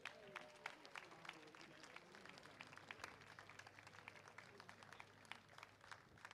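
Faint, scattered audience clapping, many irregular sharp claps, with distant voices faintly murmuring underneath.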